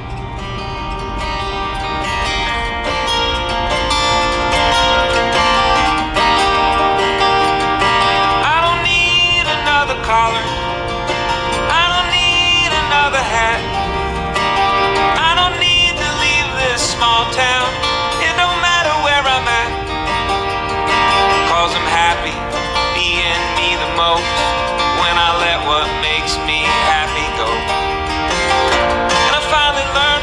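Background music: a country-style song led by acoustic guitar, playing steadily throughout.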